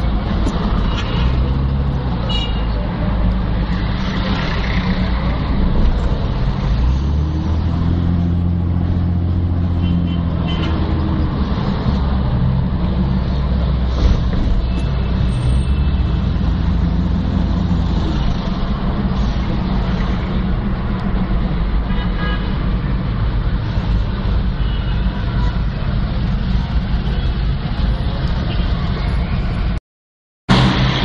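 Steady engine and road noise of a car in city traffic, heard from inside the moving car: a low drone that rises in pitch for a few seconds as the car speeds up, with a few short high tones. The sound cuts off at the very end.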